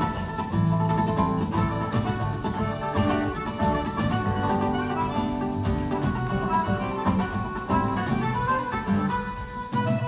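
Live acoustic band playing: acoustic guitars in fast picked runs over percussion, with accordion.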